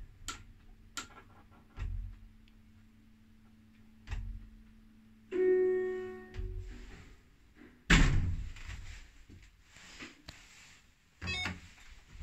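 Modernised ZUD passenger lift arriving at a floor: a faint steady hum from the drive with a few dull thumps, then an electronic arrival chime a little over five seconds in, a single tone fading out over about a second. A short noisy clatter follows about eight seconds in.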